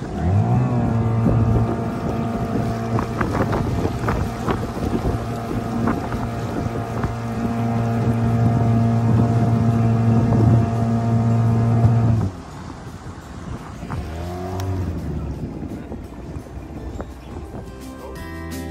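Outboard motor pushing a canoe, revving up at the start and then running at a steady pitch under way, over wind and water noise. The steady engine note cuts off sharply about twelve seconds in, and a quieter engine sound that wavers in pitch follows.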